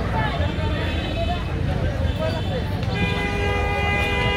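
A vehicle horn sounds one long steady blast starting about three seconds in, over the chatter of a street crowd and a constant low traffic rumble.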